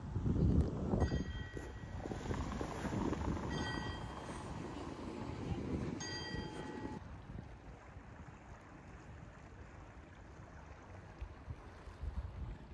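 Wind buffeting the microphone on a gusty day, heaviest over the first seven seconds, then easing to a quieter steady rush. A few brief ringing tones sound through it early on.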